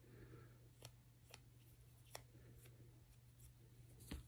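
Near silence: a few faint, sharp clicks of a pistol slide and small parts being handled, over a low steady hum.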